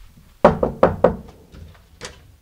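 Knocking on a door: four quick knocks, about five a second.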